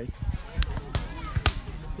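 A volleyball being hit: a few sharp slaps about half a second apart, over faint background voices.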